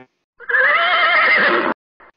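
A horse whinnying once for about a second and a half, loud and with a wavering pitch, cutting in suddenly.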